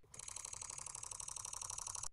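Sony A9 camera firing a high-speed burst: a rapid, even run of shutter clicks, about twenty a second, that stops suddenly after nearly two seconds.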